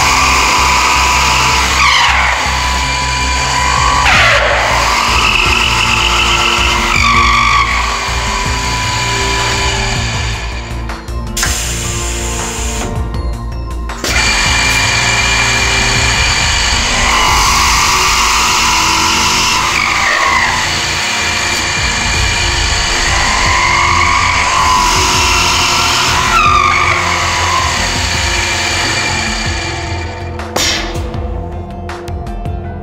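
Multi-spindle drill head boring into a solid wood block. The spinning drills' whine dips in pitch as they bite and recovers as they ease off, in two passes with a quieter lull about eleven seconds in. Background music plays underneath.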